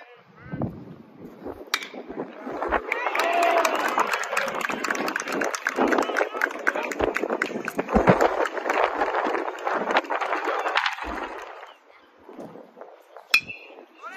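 A bat cracks against a baseball a little under two seconds in, then a crowd of players and spectators cheers and shouts for several seconds as the hit goes for a double, dying down near the end.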